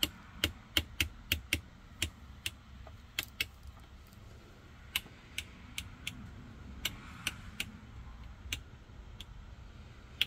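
The Midland 77-805 CB radio's rotary channel selector clicking through its detents one channel at a time, about nineteen clicks in irregular runs, some in quick succession and some a second or more apart. A faint steady hum sits underneath.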